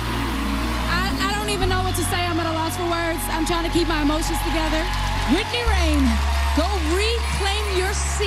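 A woman singing a slow, melismatic vocal line with backing music over a deep, sustained bass drone. The drone steps to a new note twice, once early and once near the middle.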